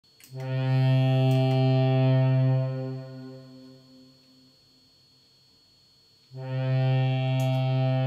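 Synthesized tone from a Line 6 Helix's 3 Note Generator block, set off by a footswitch click: a steady, rich low note holds for a couple of seconds, then fades away. A second note of the same kind comes in about six seconds in.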